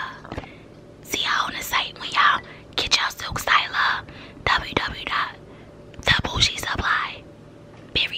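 A woman whispering close to the microphone in several short phrases, with a few sharp clicks among them.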